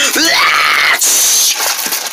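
Vocal sound effects made by mouth: a loud hiss, a yell that rises in pitch and holds for about a second, then another burst of hiss.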